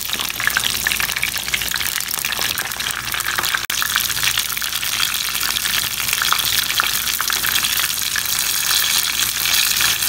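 Small whole slit eggplants frying in hot oil: a steady sizzle with fine crackling and popping, broken once by a brief drop-out a little before four seconds in.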